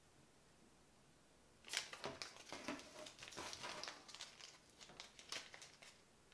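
A small plastic baggie and a paper note crinkling and rustling as they are handled and opened. The sound starts abruptly about two seconds in and runs as a dense crackle for about four seconds.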